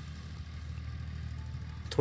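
A motor running with a steady low hum.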